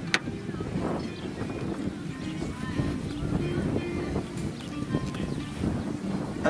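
Faint background music over a steady low outdoor rumble with some wind on the microphone, and one sharp click right at the start.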